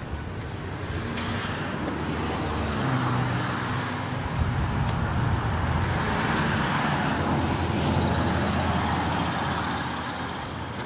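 A motor vehicle driving past on the street, its engine hum and tyre noise building over the first few seconds, holding, then easing off near the end.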